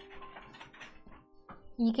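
Faint scratchy clicking of a gel polish brush and its plastic bottle being handled while clear gel is brushed onto a nail tip, over soft background music.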